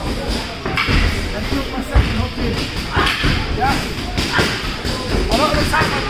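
Two grapplers rolling and shuffling on a grappling mat, with one heavy thump of a body landing on the mat about two seconds in.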